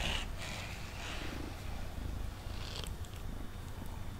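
Domestic cat purring steadily in a low rumble, with the hissing scrape of a grooming brush drawn through its fur at the start and again near the end.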